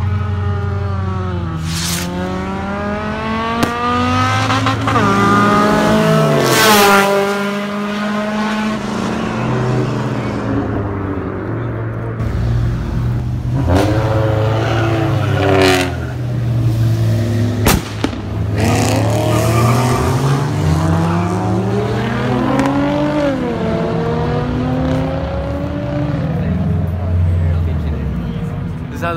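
Car engines accelerating hard down the street in several runs, the pitch climbing and dropping back again and again as they shift through the gears, over a steady low engine drone. A few short, sharp noises stand out in between.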